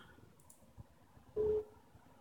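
A faint mouse click, then about a second and a half in, one short, single-pitched beep from the computer, a Windows alert sound as a security prompt opens.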